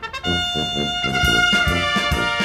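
Brass band music starting up after a short break, with held brass notes over a steady oom-pah beat of about four a second.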